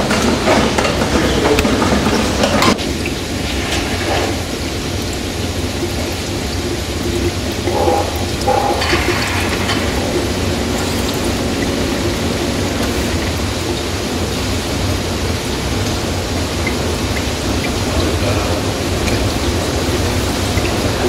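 Kjeldahl steam-distillation unit running with a steady rushing noise as it steam-distils ammonia out of a digested flour sample into the receiving flask. It is louder for the first couple of seconds, drops suddenly, and surges briefly about eight seconds in.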